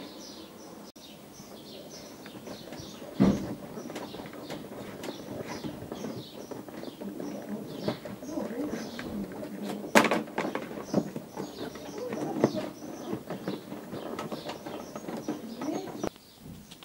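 Small birds chirping steadily, several short chirps a second, while hands work a cable into a car's plastic door-sill trim, with two sharp knocks about three and ten seconds in.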